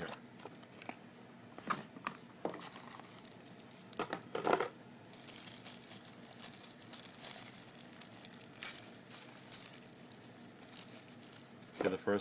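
Clear plastic bag crinkling as it is handled and opened, in irregular crackles with louder bursts about two seconds in and again around four seconds in.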